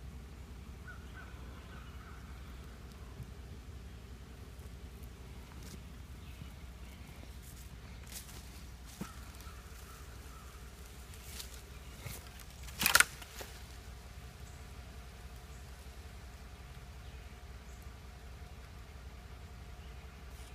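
Quiet outdoor background with a steady low hum and a few faint clicks, broken once about thirteen seconds in by a brief, sharp, loud noise.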